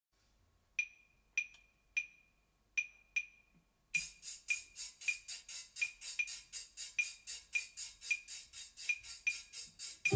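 Claves tapping a clave rhythm alone, five sharp ringing clicks, then a shaker joins about four seconds in with quick even shakes, about five a second, while the claves carry on. This is a soft Latin percussion introduction.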